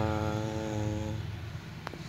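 A man's voice holding a drawn-out hesitation sound, a steady "uhh" for about a second that trails off, over a steady low background hum. A single sharp click comes near the end.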